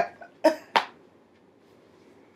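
A woman coughs twice in quick succession about half a second in, the second cough sharper.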